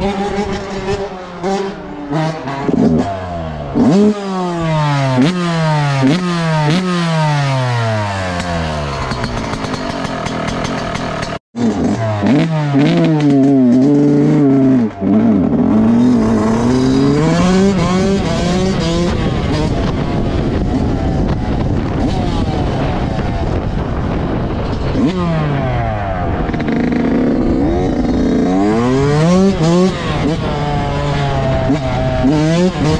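Yamaha YZ125 two-stroke dirt bike engine revving up and down over and over as it is ridden, its pitch repeatedly falling and jumping back up, with a brief break about eleven seconds in.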